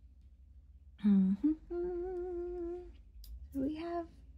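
A woman humming to herself with her mouth closed: a short low note sliding up, then one steady held note for about a second, and another short rising note near the end.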